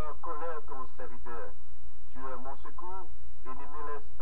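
A person's voice speaking in short phrases over a steady low hum.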